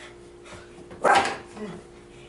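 A small dog gives one short bark about a second in while sitting up and pawing for a treat held above it.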